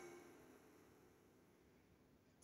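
Near silence, as the last of a chiming music jingle dies away within the first half second.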